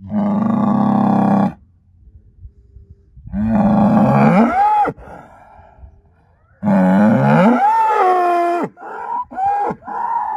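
Angus bull bellowing: three long, loud bellows, the later two climbing from a low note to a high strained one and falling away, then a run of short, broken calls near the end.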